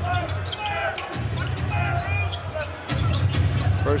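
A basketball dribbled on a hardwood arena court amid crowd and arena noise, over music with a steady low bass.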